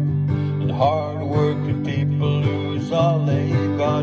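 Music: a steel-string acoustic guitar strummed steadily in a country-style song, with a melody line over it that bends in pitch a couple of times.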